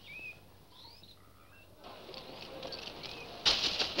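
Jungle sound effects: a few faint, short whistling bird calls, then a rising background hubbub. Near the end, loud shouting voices break in.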